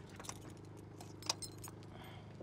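Car keys jingling as the trunk lock of a 1962 Ford Galaxie 500 is worked, with light clicks and one sharp click a little over a second in as the trunk latch releases.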